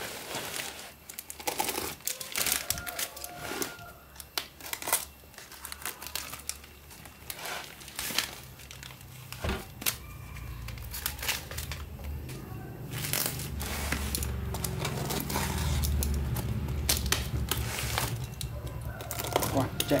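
Plastic parcel wrapping crinkling and tearing as it is pulled off a cardboard box, with irregular rustles and light knocks of the box being handled. A low hum comes in about halfway through.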